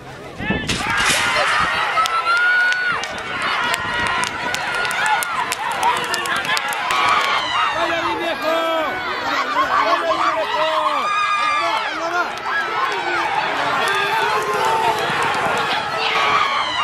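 Spectators shouting and yelling all at once through a horse race, many voices overlapping and rising and falling. A sudden loud bang about half a second in marks the starting gates springing open.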